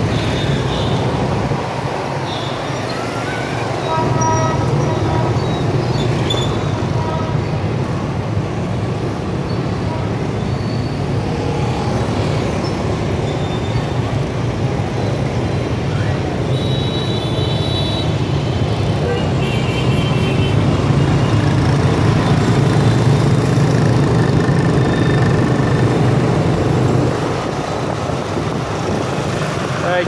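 Dense city street traffic of motorbikes and scooters, with cars and vans among them: engines running in a continuous low rumble, broken several times by short horn toots.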